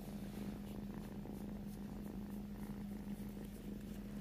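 Kitten purring steadily while its belly is rubbed, with a steady low hum underneath.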